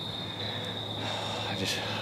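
Crickets trilling in one steady, high, unbroken tone.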